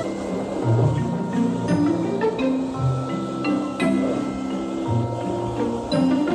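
Background music: a melody of held notes moving in steps over a low bass line.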